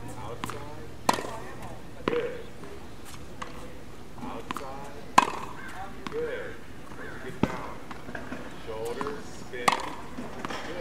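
A tennis racket hitting the ball during backhand practice on a hard court: about five sharp pops spaced one to three seconds apart, with quieter knocks between them.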